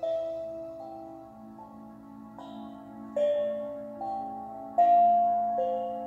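Slow, calm background music: chime-like mallet notes, one about every 0.8 seconds, forming a gentle melody over a steady low drone. The note a little before five seconds in is the loudest.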